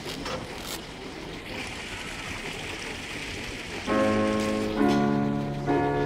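A steady hiss of room and audience noise, then about four seconds in a keyboard starts playing sustained chords that change about once a second, the opening of a piece of music.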